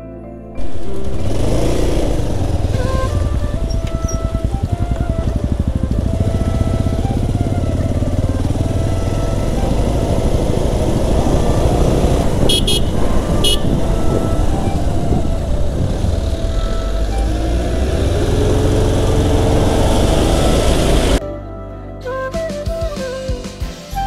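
Motorcycle on the move: the engine running under heavy wind noise on the microphone, cutting in suddenly and cutting off abruptly near the end. Late on the engine note rises as it speeds up, and two short high beeps sound about midway.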